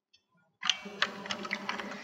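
Computer keyboard keystrokes: a few sharp clicks over a faint noise, starting a little over half a second in, as the typed command is entered.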